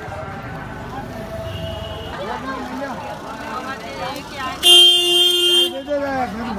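A vehicle horn sounds one loud, steady note for about a second near the end, over people's chatter. A fainter, shorter horn-like tone comes about a second and a half in.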